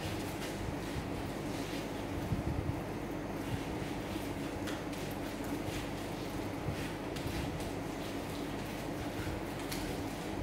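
Hands rubbing wheat paste onto the jute twine spiking of a Maltese firework shell, giving soft rustles and a few faint clicks over a steady room hum.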